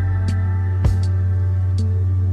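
Background music: a sustained deep bass under held tones, with a single sharp beat a little under a second in.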